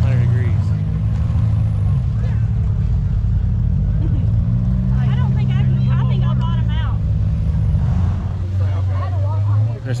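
An engine running steadily with a low drone, its pitch rising slightly about four seconds in and dropping back near eight seconds, with faint voices talking in the middle.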